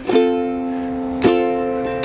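Ukulele strummed twice, an F chord, once at the start and again about a second later, the chord ringing on between strums.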